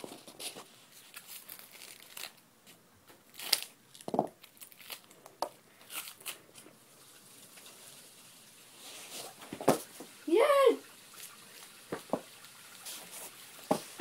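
Intermittent crinkling and clicking of a plastic freeze-pop sleeve being handled, with a short cheer about ten seconds in.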